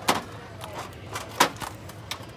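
Plastic Maggi Savor liquid seasoning bottles knocking against each other and the shelf as a hand takes one out. A sharp clack comes at the start and a louder one about a second and a half in, with lighter clicks between.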